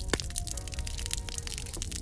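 Hot oil crackling and spitting as sliced onions fry in a wok, a dense run of sharp pops with one louder pop just after the start. Soft background music plays underneath.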